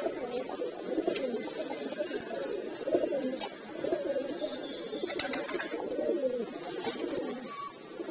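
Several domestic fancy pigeons cooing, their low coos overlapping one another.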